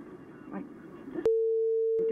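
A broadcast censor bleep: one steady tone, a little under a second long, starting about a second and a quarter in, covering a swear word in speech.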